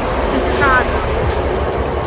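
Steady low rumble and hum of a passenger train car standing at a station, with a short voice about half a second in.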